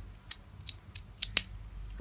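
Plastic LEGO bricks clicking as they are handled and pressed together by hand: a few sharp clicks, the loudest two close together a little past the middle.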